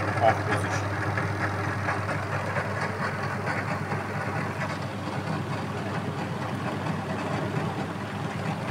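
Abdullah AE-900A 3.5 kg dough kneader's electric motor running, a steady hum with an even mechanical whirr from the drive turning the kneading blade in its stainless steel bowl, under timer control.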